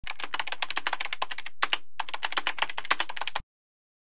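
Rapid typing on a computer keyboard, several key clicks a second, with a short pause about halfway. It stops about three and a half seconds in.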